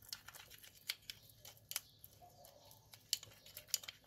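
A spoon stirring a thick petroleum-jelly paste in a small glass bowl: faint, irregular clicks and scrapes of the spoon against the glass.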